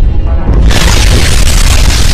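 Loud synthetic energy-blast sound effect, a heavy rumbling boom with a hiss over it, dipping briefly about half a second in before surging again.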